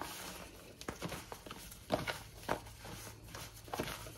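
Disposable plastic gloves crinkling and rustling as hands rub a dry spice rub into raw pork rib tips in a plastic container, with irregular soft clicks and taps, a few sharper ones about halfway through.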